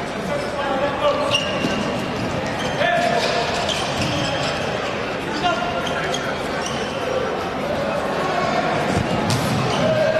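Futsal play on an indoor court: the ball struck and dribbled by players' feet, with brief shoe squeaks on the court floor and voices calling in a reverberant sports hall.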